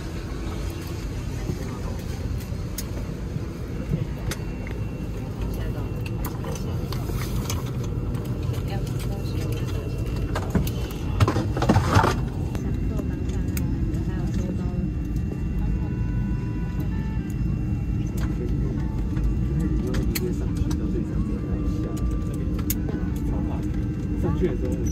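Steady low rumble of an ATR 72-600 cabin at the gate during boarding, with a murmur of passengers' voices. A brief louder noise comes about halfway through.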